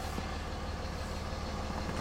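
Steady low hum of the truck's 5.9-litre Cummins inline-six diesel idling, heard from inside the cab.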